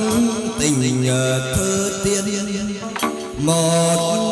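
Vietnamese chầu văn ritual music: long, wavering sung or melodic notes over a moon lute, punctuated by sharp percussion strikes. There is a brief dip with a strong strike about three seconds in, then the music resumes.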